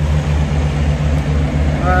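Large diesel engine idling steadily, a low even drone with no change in speed.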